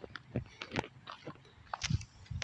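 Footsteps crunching on grass and gravel, a few irregular steps about half a second apart, each a soft thump with a crackle.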